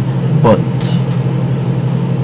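A steady low hum, with one short spoken word about half a second in.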